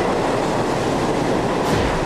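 Electric commuter train passing close by: a loud, steady rush of wheel and track noise.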